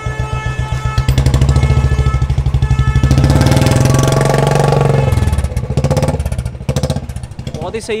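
Royal Enfield Classic 350's single-cylinder engine idling with an even, rapid thump from the exhaust. It is revved up about three seconds in, drops back to idle after about five seconds, and slows near the end. The engine note is judged sound and fine.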